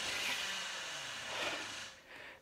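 A soft, even rushing noise, steady and then cutting off suddenly near the end.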